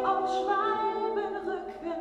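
A cappella singing: voices holding sustained chords in harmony, with no instruments.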